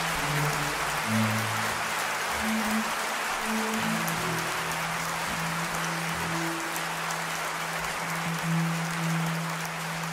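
Concert audience applauding steadily in a theatre, a dense even clatter of clapping, with a few low sustained instrument notes underneath.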